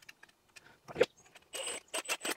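Small clicks of a headlight and its screws being handled, then a Milwaukee M18 Fuel cordless drill-driver running briefly near the end with a thin high whine, driving one of the screws that hold the headlight in its surround.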